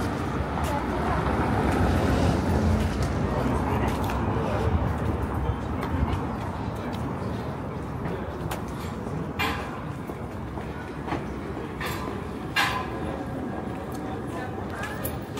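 City street ambience with a heavy vehicle's low rumble swelling over the first few seconds and slowly fading, under the chatter of passers-by. A few sharp knocks or clatters come later.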